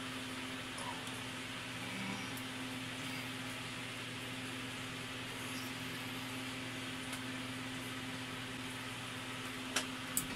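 Steady low hum with an even hiss of room background noise, unchanging throughout, with no distinct events.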